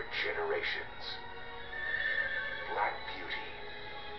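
A horse trailer's soundtrack played from a television speaker: music under the last word of the narration, and a horse neighing.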